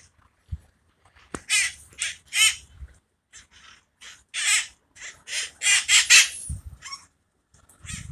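Feral parakeets giving harsh, screeching calls in quick runs, several birds overlapping, loudest about six seconds in.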